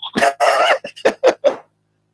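A man laughing: one longer burst, then several short quick bursts of laughter about a fifth of a second apart.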